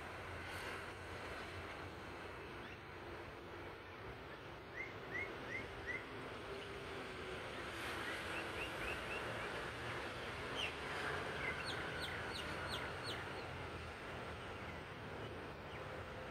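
Bird calls in three short runs of quick chirps: four brief rising chirps about five seconds in, a few more about three seconds later, then a faster run of higher, sharper notes near the middle, over a steady river hiss.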